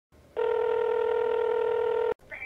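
A telephone ringing: one steady, buzzy electronic tone that starts a moment in and holds level for nearly two seconds.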